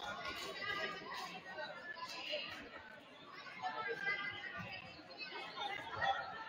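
Indistinct chatter of several voices in a gymnasium.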